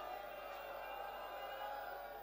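Faint distant voices in the background, with drawn-out, sustained tones.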